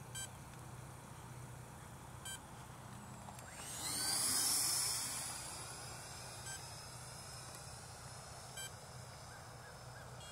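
80 mm electric ducted fan of an FMS BAE Hawk RC jet whining past in a low flyby, swelling about three and a half seconds in and falling in pitch as it moves away. A few short electronic beeps sound every couple of seconds, which the pilot takes for the flight battery running low.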